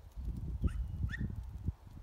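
A small dog gives two short, rising yips, about half a second apart, over a low, uneven rumbling thump.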